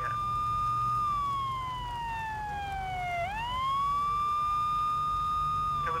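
Emergency vehicle siren wailing. It holds a high note, slides slowly down for about two seconds, sweeps quickly back up, and holds high again.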